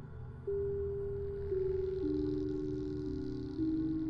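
Slow ambient background music: long held low notes come in one after another, overlapping and stepping lower, over a low hum with a faint high shimmer.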